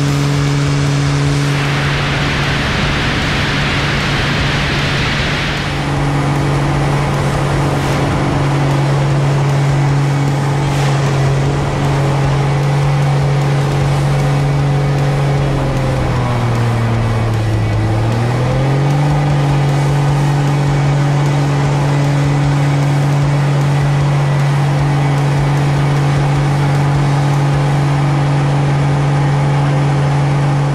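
Pitts Special biplane's piston engine and propeller droning steadily in flight, with a rush of wind noise for a few seconds near the start. Just past halfway the pitch sags and then climbs back up as the engine and propeller slow and pick up again through an aerobatic maneuver.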